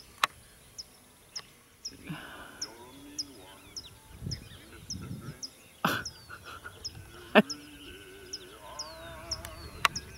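A bird repeating a short, high, falling chirp at an even pace, about two or three times a second. A few sharp clicks and some low thumps sound over it.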